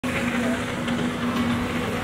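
A steady engine drone holding one constant pitch, over a wash of outdoor noise.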